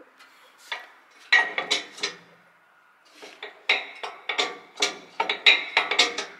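Metal-on-metal clinks and clanks of hand tools and parts being handled against a tractor's casing. They come as bursts of sharp strikes with a short ring, a quiet spell about halfway through, then a denser run of clinks near the end.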